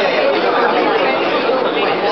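Indistinct chatter of many people talking at once in a large hall.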